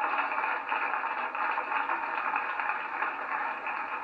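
Studio audience applauding steadily after a punchline.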